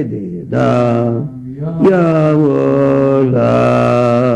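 A man's voice chanting in long, drawn-out sung syllables at a low, steady pitch, with two short breaks between phrases.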